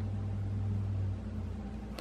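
Steady low electrical hum with a faint hiss, the background of a small room; the deepest part of the hum fades a little past halfway.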